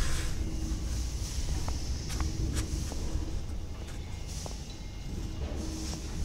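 Light scattered clicks and taps of a green PVC conveyor belt being slid and positioned on a manual finger puncher's comb, over a steady low rumble.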